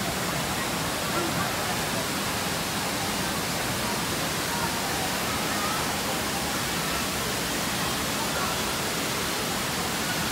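Steady rush of Looking Glass Falls, a waterfall pouring over a rock ledge into its pool, an even roar of water.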